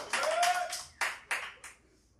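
Audience applause dying away, thinning to a few last separate claps before stopping.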